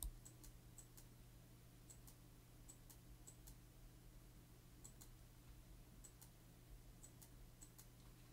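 Near silence with faint, scattered clicks of a computer mouse being used to scroll, a couple a second, over a low steady hum.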